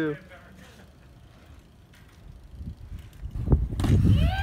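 BMX bike rolling over paved ground, the low rumble of its tyres faint at first and growing louder in the last second as the bike passes close, with a couple of sharp knocks just before the end.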